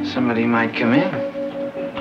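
A woman laughing and vocalising with a gliding, pitch-bending voice over background music with long held notes.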